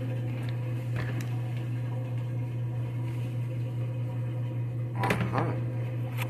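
A steady low hum, with a few faint clicks near the start and a short burst of rustling and tapping about five seconds in as tarot cards are handled.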